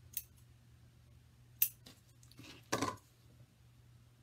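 Scissors snipping the ends of a thin ribbon: two short, sharp snips about a second and a half apart, then a longer, louder snip-and-handling sound near three seconds in.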